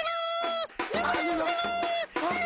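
Two long, high-pitched cries, the second rising sharply and held for over a second.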